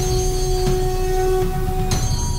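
TV channel outro music: held synth tones over a low rumble, with a sudden hit at the start and another near the end, as the logo animation changes.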